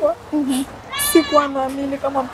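A woman's voice speaking in drawn-out, sing-song syllables, with a long held tone in the second half.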